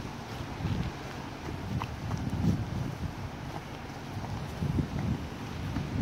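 Wind rumbling and buffeting on a phone microphone, with irregular footsteps and small scuffs on a dirt trail.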